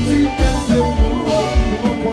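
A live compas band playing, with electric guitar and keyboard lines over a steady drumbeat of about three beats a second.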